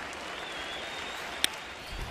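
Ballpark crowd noise, a steady hum from the stands, with one sharp crack of the bat meeting the pitch about a second and a half in.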